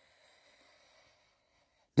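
Near silence with a faint breath drawn through most of it, before a man's voice starts again at the very end.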